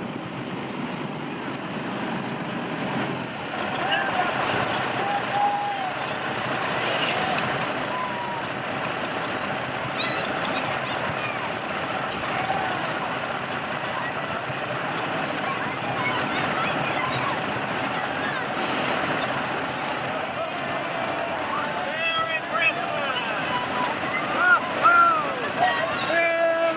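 A fire engine running as it pulls up, with two short hisses from its air brakes, about seven seconds in and again about nineteen seconds in, over the chatter of a crowd.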